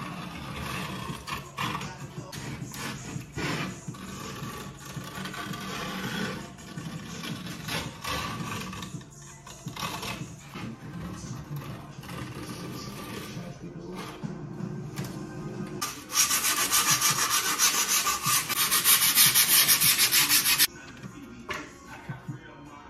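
Griptape being trimmed on a skateboard deck: a metal tool and blade scrape and cut along the griptape at the deck's edge in irregular strokes. Near the end comes a much louder, fast, even rasping against the edge of the griptape for about five seconds, then it stops.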